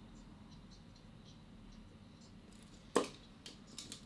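Faint pen scratching on paper, then a sharp click about three seconds in and three smaller clicks after it: pens being put down and picked up on a desk.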